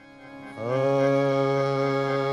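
Harmonium sounding a held chord: it starts faintly, swells about half a second in, and then holds steady.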